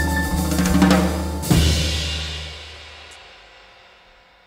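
Jazz piano trio, a Steinway Model D concert grand with upright bass and drum kit, playing the closing bars of a tune. About a second and a half in it ends on a final chord struck together with a cymbal crash, which rings and fades away.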